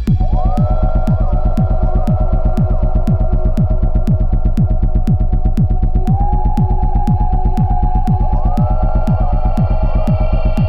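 Electronic dance track: a steady kick drum whose thumps fall in pitch, under a throbbing bass, held synth tones and synth swoops that rise in pitch, with regular hi-hat ticks. The full beat comes back right at the start after a brief drop.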